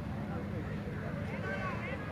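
Indistinct shouts and calls from football players and spectators, loudest near the end, over a steady low rumble.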